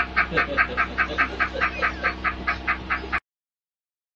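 A man laughing hard in a rapid, even run of loud bursts, about five or six a second, with a honking, quack-like edge. It cuts off suddenly a little over three seconds in.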